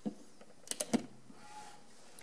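A plastic plug-in power adapter being handled at a wall outlet, cutting and restoring power to the smart lock. There is a sharp click at the start, then a quick cluster of clicks about a second in as the prongs go into the socket.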